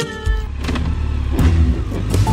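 Motorcycle engine idling, a steady low rumble with fast even pulses. Background music fades out near the start.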